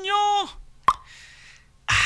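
A voice holds a drawn-out vowel for about half a second, then a single sharp click a little under a second in. A short hiss of breath or sibilance follows near the end.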